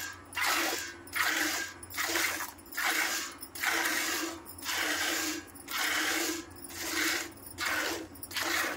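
Cow being milked by hand into a metal bucket: milk streams squirting into the milk already in the pail, a rhythmic hiss of squirts a little faster than one a second.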